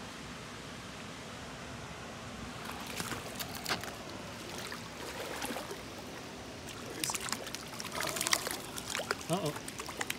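Shallow creek water running steadily, then splashing and sloshing as a hooked trout is brought into a landing net, the splashes coming thickest and loudest between about seven and eight and a half seconds in.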